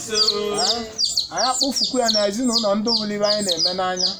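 A small bird chirping over and over, short high falling chirps about three a second, under a man's voice.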